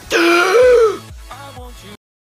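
A person's loud, shocked vocal cry, under a second long and rising slightly in pitch. Quieter music with a quick bass beat follows and cuts off suddenly near the end.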